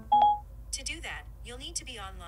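Siri's brief electronic chime from an iPhone speaker, then Siri's synthesized voice replying that the task needs an internet connection ("To do that, you'll need to be online"): Siri refusing a request offline.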